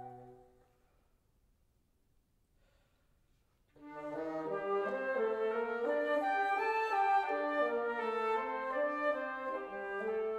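Flute and bassoon duo: a held chord dies away, followed by about three seconds of near silence, then both instruments come back in with moving lines, the low bassoon line climbing in steps.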